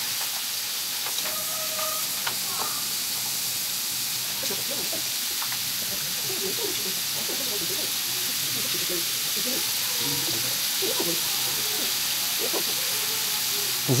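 Sliced liver searing in a well-heated pan of olive oil and rendered fat: a steady, even sizzle.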